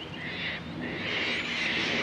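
Birds chattering: a dense run of high calls with short breaks.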